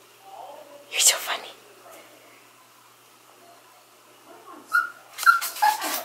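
Small dog whimpering and whining in short high cries, with a loud one about a second in and several more near the end. The dog is unhappy at being at the vet.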